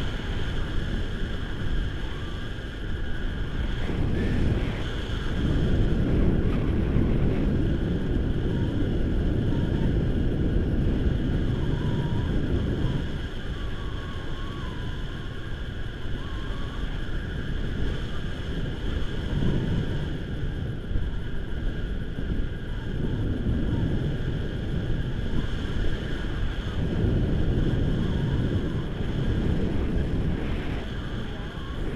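Wind buffeting the microphone of a camera on a tandem paraglider in flight: a low rumbling rush that swells and eases in gusts every few seconds.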